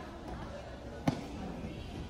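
A single sharp crack about a second in, a badminton racket striking a shuttlecock, with a short reverberant tail over faint background noise in a large hall.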